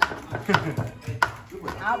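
Kitchen knife chopping on a cutting board: three or four separate, unevenly spaced strikes, under background chatter.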